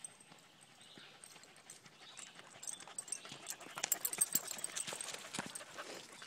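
Footsteps of a person and a dog on a dirt trail strewn with dry leaves: quick uneven crunches and pattering that grow louder as they approach and pass close by, loudest about four seconds in.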